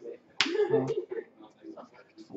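A single sharp slap about half a second in, followed by a short burst of voice.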